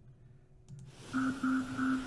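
A short click, then the opening of the documentary's soundtrack: a held low tone with a fainter higher one, pulsing three times over a faint hiss.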